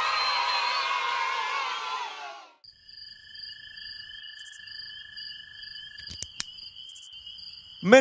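A song's music fades out over the first two and a half seconds. Then come faint cartoon night-ambience crickets, chirping in steady high-pitched tones, with a few sharp clicks about six seconds in.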